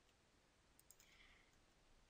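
Near silence: room tone with two faint computer mouse clicks about a second in.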